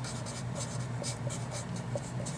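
Felt-tip marker writing on paper: a quick run of short strokes as a word is written out, over a low steady hum.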